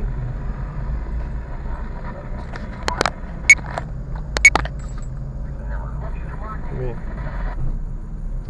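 Car driving slowly, heard from inside the cabin: a steady low engine and road rumble. Several sharp knocks come in two pairs, around 3 s and around 4.5 s, and these are the loudest sounds.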